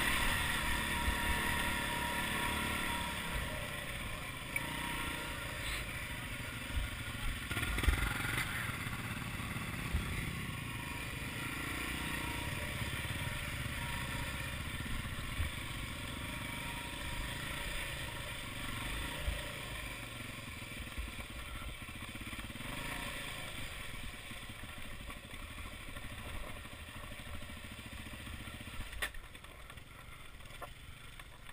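Off-road motorcycle engine running at low revs while the bike rolls over loose rock. The engine note is strongest in the first few seconds, then drops lower and quieter. Scattered knocks and clatter come from the wheels and suspension hitting stones, the loudest about eight seconds in.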